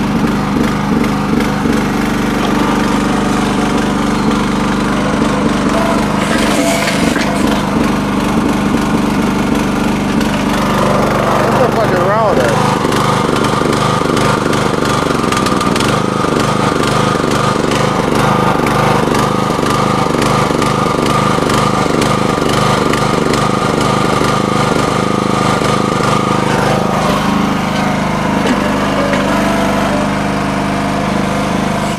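Small gasoline engine of a towable mini backhoe running steadily as the operator works the hydraulic digging arm. Its note changes about a third of the way in, with a short wavering whine, and changes back near the end.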